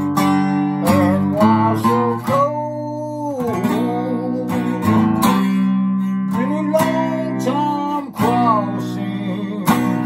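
Acoustic guitar strummed in sustained chords while a man sings over it in long, held notes.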